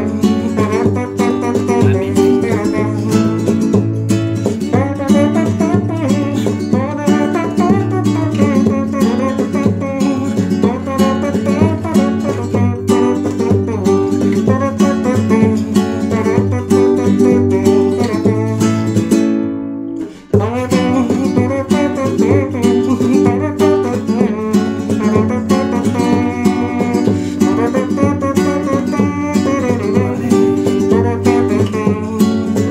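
Nylon-string flamenco guitar strummed in a driving rumba rhythm, with a steady hummed tone made with the mouth held under the chords. The sound drops out abruptly for under a second about twenty seconds in, then the playing resumes.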